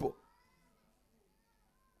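A man's word cuts off just at the start, then near silence with only a few faint, thin, wavering tones.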